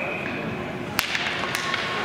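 Hockey sticks clacking on the puck and each other as a faceoff is taken: one sharp crack about halfway through, then a few lighter clacks. A steady high whistle, probably the referee's, ends about half a second in.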